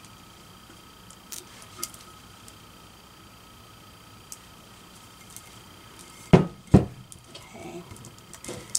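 A tumbler being handled on a paper-covered table: a few light clicks, then two sharp knocks about half a second apart near the end as the cup is set down, followed by soft handling noise.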